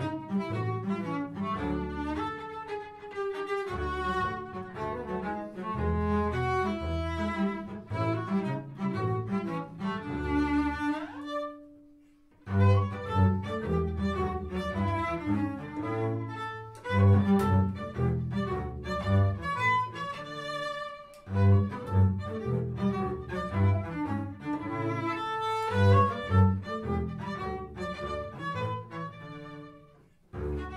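Cello and double bass playing a bowed duet, a tune of quick successive notes over a low bass line, as variations on a melody. The playing stops briefly about twelve seconds in, then starts again.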